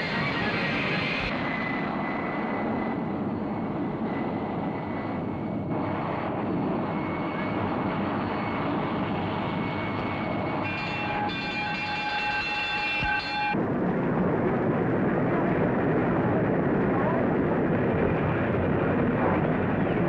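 Jet aircraft engine noise, a steady rush as the jet rolls along the airstrip. For a few seconds around eleven seconds in, a high steady whine sits on top of it, and the noise grows louder over the last several seconds.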